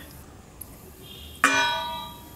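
A metal spoon strikes a stainless steel mixing bowl once, about one and a half seconds in, and the bowl rings briefly as the sound fades.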